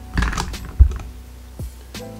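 Hands working wet hair around a flexi rod: a short rustle, then a loud dull thump about a second in and a lighter knock near the end, over soft background music.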